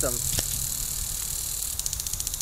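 Lawn sprinkler on a stake spraying water with a steady hiss; near the end a rapid, even ticking of about ten a second starts.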